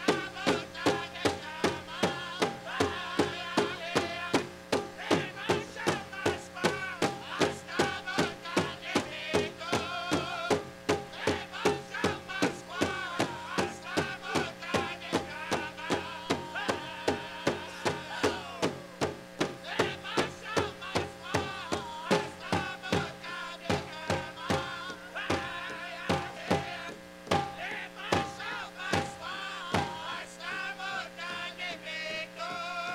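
Powwow drum group singing an intertribal song: a steady, even beat on the big drum, about two strikes a second, under the singers' voices.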